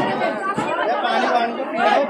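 Several people talking at once, a loud babble of overlapping voices.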